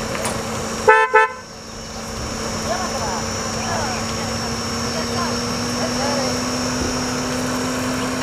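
Horn of a Kia compact SUV giving two short beeps about a second in, followed by a steady low hum.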